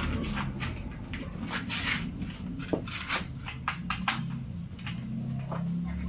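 A German shepherd making low sounds while being held and restrained, with scuffling and a run of sharp clicks and knocks.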